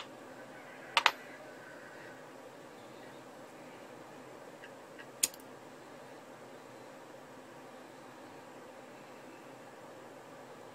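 A handheld lighter being clicked to light: a sharp double click about a second in and another single click a little after five seconds, over a steady low background hum.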